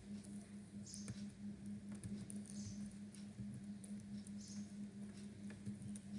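Slow typing on a computer keyboard: faint, scattered key clicks at a few a second, over a steady low electrical hum.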